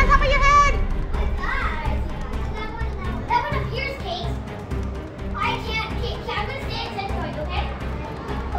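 Children's voices: a loud, high-pitched wavering squeal right at the start, then scattered short shouts and chatter, over steady background music.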